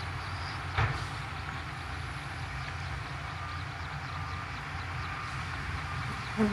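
Heavy diesel machinery, a Shantui DH17C2 crawler bulldozer with a dump truck behind it, running with a steady low rumble while pushing mud. One sharp knock stands out a little under a second in.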